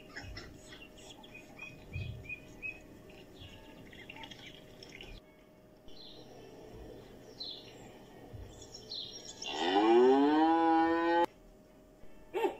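Mallard ducklings peeping in short, high chirps for the first few seconds. Then, near the end, a cow moos once in one long call that rises in pitch and then holds steady, the loudest sound here, cut off abruptly.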